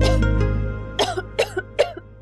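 A woman coughing in short fits: one at the start, then three quick coughs from about a second in, brought on by an allergic reaction to flowers. A held music chord fades out under the first cough.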